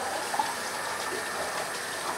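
Water running steadily from a tap into a bathroom sink.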